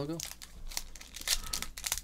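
Foil trading-card pack wrapper crinkling in the hands and being torn open, a run of short, sharp crackles.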